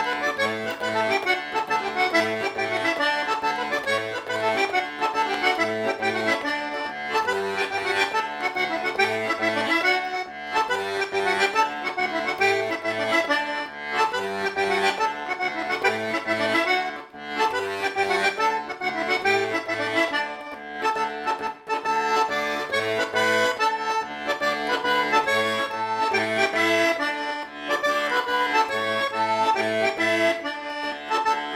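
Organetto (diatonic button accordion) playing a tarantella: a quick melody on the treble buttons over left-hand bass notes and chords that alternate in a steady rhythm.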